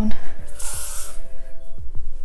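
One short burst from an aerosol hairspray can: a hiss about half a second long, starting a little over half a second in.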